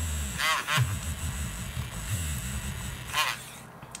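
Crayola coloured pencil scribbling a swatch on cardstock: a short run of quick back-and-forth strokes about half a second in and another near three seconds, with soft paper and hand-handling noise between.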